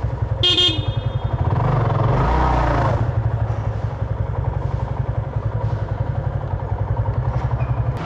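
Yamaha FZ25's single-cylinder engine running at low speed with a rapid, even low pulse, swelling briefly about two seconds in. A short horn toot sounds about half a second in.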